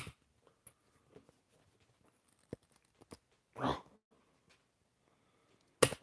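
Handling noise from a phone being forced into a spring-loaded tripod clamp: scattered sharp clicks and knocks of plastic, with a loud click just before the end and a brief rushing sound about three and a half seconds in.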